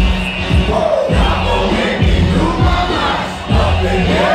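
Loud music played through a venue PA, with a deep steady bass and a regular kick drum, and a crowd shouting and singing along over it.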